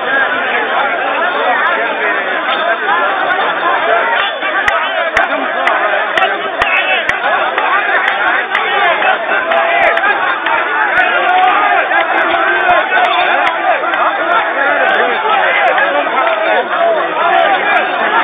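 A crowd of men talking over one another at once, a loud, steady babble of many voices with no single speaker standing out.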